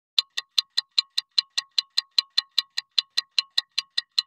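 Fast, even metallic ticking, about five ticks a second, starting just after silence, each tick bright and briefly ringing.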